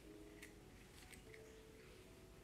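Near silence, with faint held notes of soft piano music and a few light clicks.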